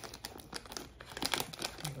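Plastic Gushers fruit-snack pouch crinkling in scattered short crackles as hands pull and twist at it, trying to tear it open.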